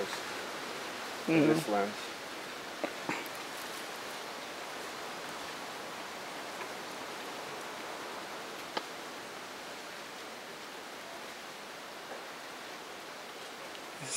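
Steady outdoor hiss, with a short burst of a person's voice about a second and a half in and a few faint clicks.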